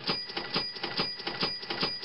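Cash register sound effect: a rapid mechanical clatter of about four or five clicks a second under a steady ringing bell tone, cutting off shortly after the end.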